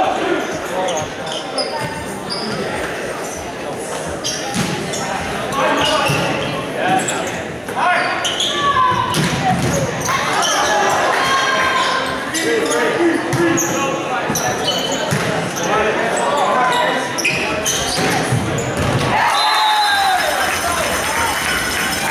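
Volleyball rally in a gymnasium: sharp hits of the ball on hands and floor echo through the hall, mixed with players and spectators calling and shouting.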